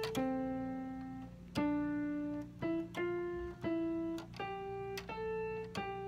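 Portable electronic keyboard played one note at a time in a slow, uneven melody, each note struck and left to ring and fade. A steady low hum runs underneath.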